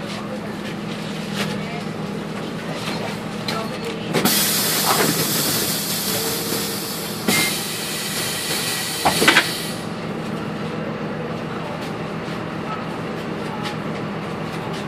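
Karosa B951E city bus idling at a stop with a steady low engine hum. From about four seconds in, two loud stretches of compressed-air hiss follow one another for about six seconds, the pneumatic system venting as the bus stands with passengers getting off.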